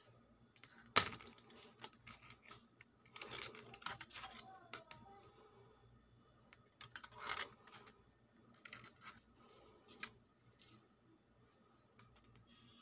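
Faint handling noise: a pair of gold bangles clicking against each other as they are turned in the hand, with a sharp click about a second in and short runs of taps and rustles around three to four and seven seconds in.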